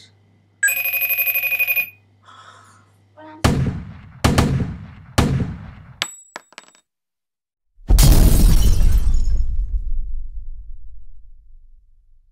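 Logo-sting sound effects: a short electronic ringing tone, then several heavy booming hits, a few sharp clicks, and a loud explosion-like blast that rumbles and fades away over about four seconds.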